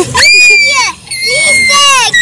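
A young child shrieking: two long, loud, high-pitched screams close to the microphone, one after the other with a short break about a second in.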